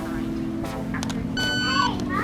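A single electronic beep, a steady high pitched tone about half a second long, about one and a half seconds in.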